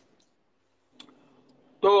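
A lull in the conversation broken by a single short click about a second in, then a man's voice starting near the end.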